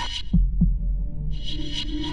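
Ambient background music with a low drone and a heartbeat-like double thump shortly after the start, under a high shimmering layer that drops out and comes back in about halfway through.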